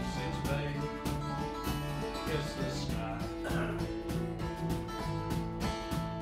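Live acoustic folk music: a band playing a tune, with acoustic guitars strummed in a steady rhythm.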